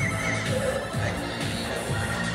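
Live electronic music played on synthesizers through a club PA: a steady low bass line with a high wavering, vibrato-like tone near the start.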